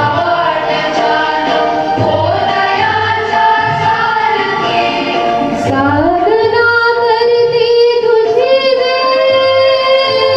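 A prayer song sung by a high voice or voices with instrumental accompaniment and a steady low beat. About six seconds in the melody glides up into a long held note.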